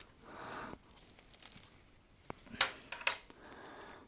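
Faint rustling of a power adapter's cable being unwound and handled, with a few light clicks and rattles of the cord and plug in the second half.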